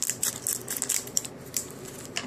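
Scissors cutting open the top of a foil trading-card booster pack, with the wrapper crinkling: a run of short, crisp snips and crackles in the first second or so, then quieter.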